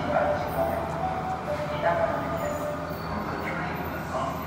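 Osaka Metro 80 series linear-motor subway train approaching through the tunnel, a steady low rumble.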